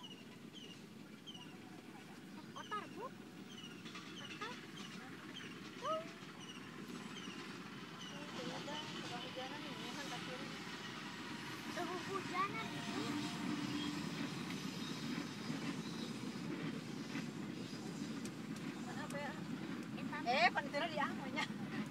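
A diesel-electric locomotive hauling a passenger train approaching, its rumble growing steadily louder from about eight seconds in. Short repeated bird chirps, about two a second, are heard over it in the first half.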